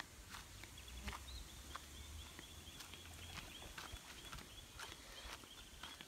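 Faint riverside outdoor ambience: a low rumble, scattered light clicks, and a thin, slightly wavering high tone that starts about a second in and fades just before the end.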